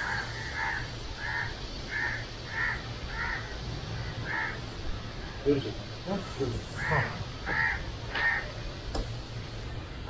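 A crow cawing repeatedly, a steady run of short harsh caws about one every two-thirds of a second, then after a pause three more caws.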